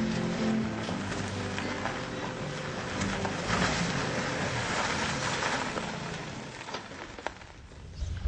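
A small car drives onto gravel and rolls to a stop, its tyres crunching on the gravel, with background music fading out in the first seconds. The car has run out of petrol.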